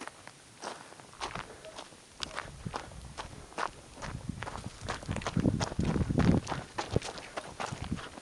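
Footsteps walking along a dry forest trail, crunching on pine needles and fallen leaves at an uneven pace of roughly two steps a second. About two thirds of the way in, a louder low rumbling joins the steps for a second or so.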